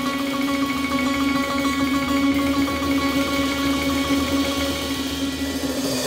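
Live jazz from a piano, bass and drums trio: a steady held tone under a fast repeated high figure. The held tone stops near the end.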